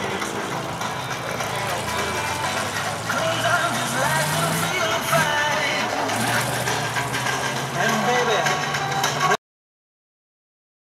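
Old pickup truck's engine running as it pulls away, a steady low hum that rises briefly about four seconds in, under people talking and laughing nearby. The sound cuts off suddenly near the end.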